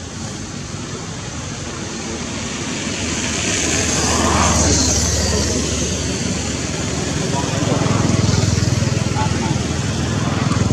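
A low engine hum that swells about four seconds in and again near the end, under a steady hiss.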